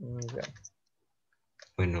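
A young man's voice over a video call: a short drawn-out hesitation sound that cuts in abruptly at the start, a pause, then the spoken word "bueno" near the end.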